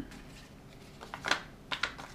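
Folded paper origami units being handled on a table: soft rustling, then a few short crisp crinkles and taps of paper in the second half.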